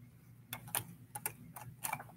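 Small plastic mini football helmets clicking and knocking against one another as a hand pushes them together, a quick irregular run of light clicks starting about half a second in.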